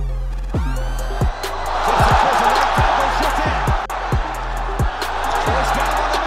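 Electronic background music with a heavy, deep bass kick about every two-thirds of a second, each hit sliding down in pitch, and a loud noise-like wash layered over it from about a second in.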